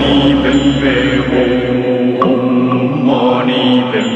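Instrumental stretch of a song with no rapped vocals: long held, chant-like tones over a low bass drone that drops out a little before halfway.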